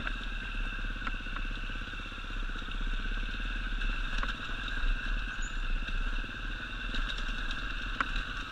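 Enduro dirt bike's engine running at low, steady speed while riding over a rocky trail, with a few sharp clicks and knocks of stones and the bike's parts.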